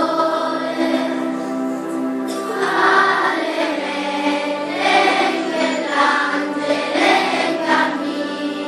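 Children's choir singing a slow song in long held notes, the voices swelling in several phrases.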